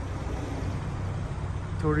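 Steady low hum of a vehicle engine running at idle, with no change in pitch.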